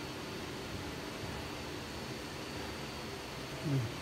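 Steady, even background hiss of room tone, with no distinct events; a short voice sound comes just before the end.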